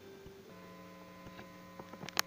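Faint last guitar note left ringing at the end of the song, a low steady tone with its overtones, with a few soft clicks.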